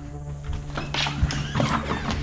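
Background music with a steady tone, and from about half a second in a run of knocks and clatter as a house door is opened and dogs scramble out through it.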